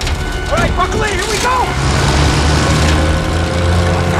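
Short wavering vocal cries early on, then a small plane's engine settling into a steady low hum from about two seconds in, with film music underneath.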